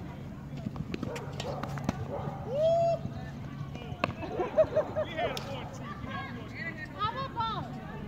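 Tennis balls being struck by rackets and bouncing on a hard court: scattered sharp knocks every second or so. Voices call out between the hits a few times.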